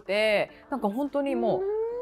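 Non-speech vocalizing: a short exclamation that rises and falls in pitch, a few spoken syllables, then one long drawn-out hum or sigh that slowly rises in pitch.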